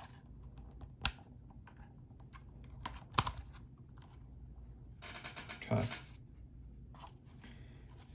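A few sharp plastic clicks and small taps from a drone fishing release clip being fitted onto the underside of a DJI Mavic Air 2, the loudest click about three seconds in.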